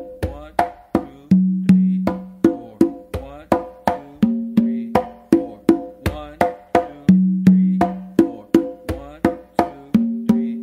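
Congas played by hand in a mambo tumbao: a repeating pattern of bass strokes, open tones and left-hand slaps spread across the tumba and conga, coming round about every three seconds. The low open tones ring out loudest.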